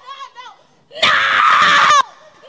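A woman screaming into a microphone while being prayed over for deliverance: faint wavering cries at first, then a loud, sustained scream about a second in.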